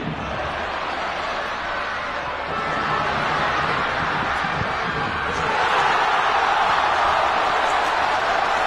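Football stadium crowd noise, a steady din of many voices that grows louder about two-thirds of the way through.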